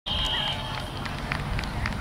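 A short steady high tone in the first half-second, then low rumbling outdoor noise with scattered faint taps as children run across the grass.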